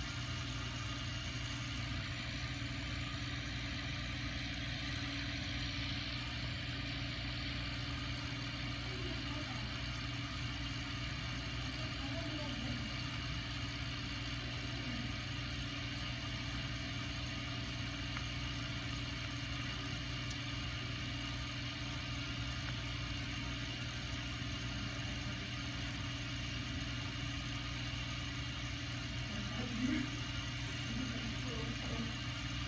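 Steady mechanical hum with an even hiss, unchanging throughout, with faint voices in the background now and then.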